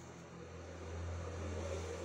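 A low steady hum that grows gradually louder, over a faint hiss.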